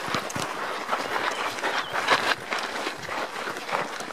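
Footsteps crunching on a dry, sandy dirt track: a steady walking pace of about two to three steps a second.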